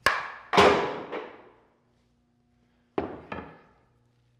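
A wooden baseball bat cracks against a glued wooden dovetail corner joint. Half a second later comes a louder bang with a ringing decay as the joint hits the wall and breaks apart, its glue not yet set, followed by a smaller knock. About three seconds in, two more wooden knocks follow.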